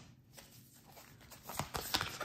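A deck of cards handled on a wooden table: quiet at first, then a few sharp taps and rustles of the cards near the end, the last one the loudest.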